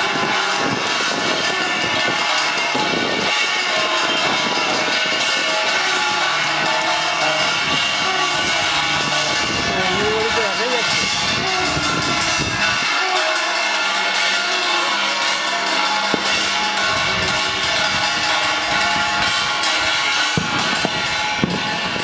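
Many people across the rooftops clapping and beating metal plates at once, a dense, unbroken clatter full of ringing metallic tones.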